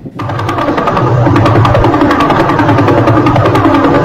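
Audio rendering of a pulsar's radio signal: a rapid, even train of pulses so fast that they merge into a steady, machine-like buzz, each pulse marking one turn of the spinning dead star.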